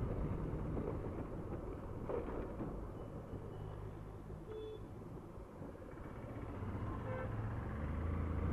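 Motorcycle engine running at low road speed, its steady low hum mixed with road and air noise; the sound eases off in the middle and grows again near the end as the bike picks up speed.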